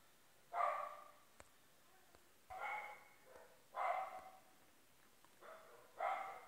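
A dog barking faintly in the background, four barks spaced one to two seconds apart.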